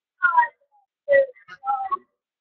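A boy's voice making three short, wordless, high-pitched vocal sounds with pitch glides.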